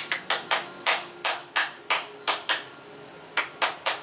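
An adult clapping hands in a steady run, about three claps a second, with a short pause a little past halfway.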